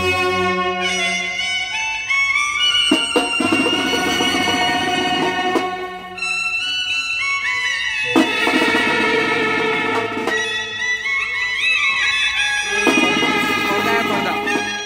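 Indian brass wedding band playing live: saxophone and trumpets carry a melody in long held notes over drums, with stretches of heavier drumming that come and go.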